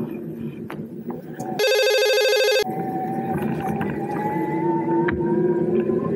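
A loud electronic horn-like beep, one steady pitched tone held for about a second and cut off sharply, over riding noise. After it, an electric-assist bike motor's whine rises slowly in pitch as the bike picks up speed.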